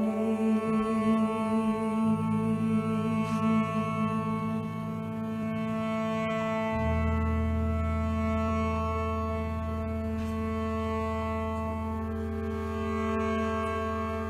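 A live band playing a sustained instrumental drone, with a bowed cello and several notes held steady over it; the lowest note changes about two seconds in and again near the seven-second mark.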